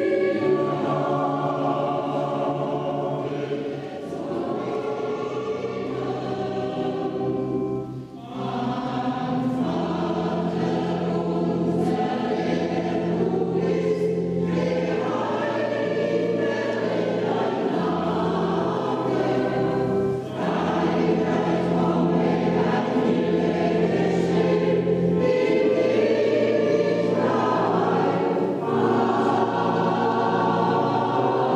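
A choir singing, mostly women's voices, without a break except for a short pause between phrases about eight seconds in.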